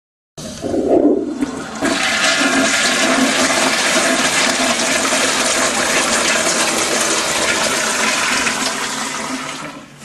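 TOTO toilet flushing after its lever is pulled: a rush of water starts suddenly about half a second in, holds steady for several seconds and fades near the end.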